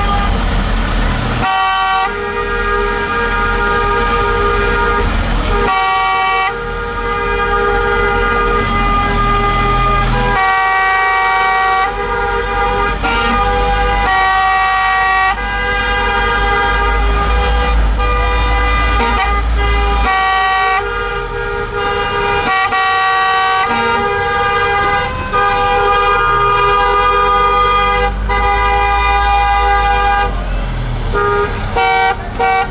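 Car horns held down almost without a break, several steady tones overlapping. The set of horns sounding changes every few seconds, over a low engine rumble.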